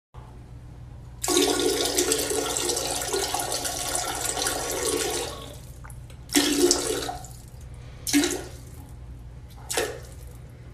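A stream of liquid splashing into toilet water, as someone urinates: one long stream of about four seconds, then three shorter spurts as it trails off.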